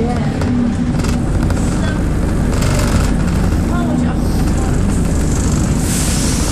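Single-deck bus engine running steadily while the bus drives along, heard from inside the passenger saloon, with a steady low drone and scattered rattles.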